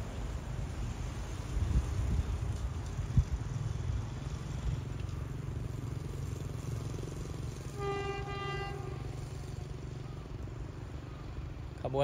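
Horn of an approaching GEK-class diesel-electric locomotive sounding one blast of about a second, about eight seconds in, over a steady low rumble.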